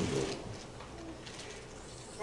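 A pause in a man's amplified sermon: the end of his phrase fades out, leaving quiet church room tone with one faint, brief soft tone about a second in.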